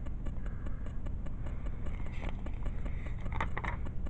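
Handling noise from a handheld camera being moved over comic book pages: faint scattered clicks and rubbing over a low steady hum.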